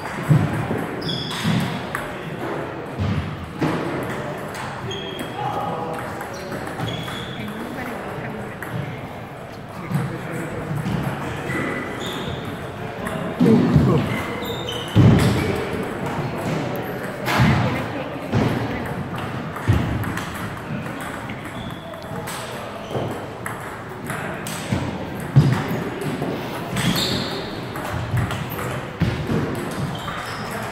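Table tennis rallies: a plastic ball clicking off paddles and bouncing on the table in quick strokes, with pauses between points.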